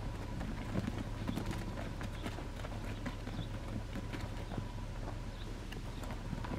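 Sheep hooves, a ewe and her lamb, stepping on hard, dry dirt: a run of small irregular clicks and scuffs over a steady low background hum.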